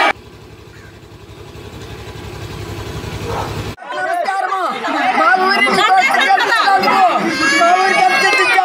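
A low, evenly pulsing buzz slowly grows louder for about three and a half seconds, then cuts off abruptly. After that a woman speaks loudly in a high, strained voice, with other voices of a crowd around her.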